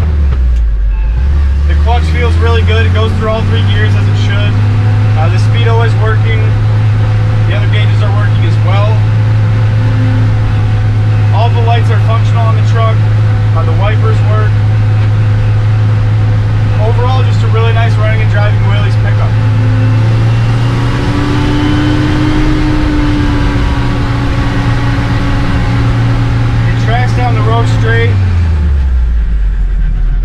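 1954 Willys pickup driving, heard from inside the cab: a steady low engine and drivetrain note that rises out of a lower pitch in the first few seconds, holds steady while cruising, then drops away near the end as the truck slows.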